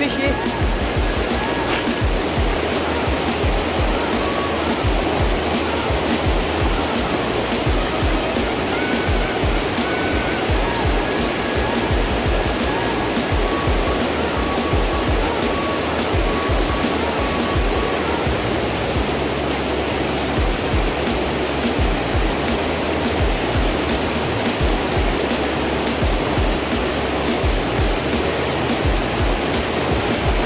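Creek water rushing over a shallow riffle, a steady, unbroken rush, with uneven low buffeting of wind on the microphone.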